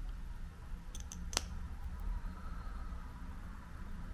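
A few small clicks from the screw cap of a Merit Shade Slick tinted lip oil bottle being twisted open, the last and sharpest about a second and a half in, as the applicator is drawn out.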